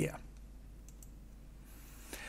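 A couple of faint computer clicks just under a second in, over a steady low hum: the slide of a presentation being advanced.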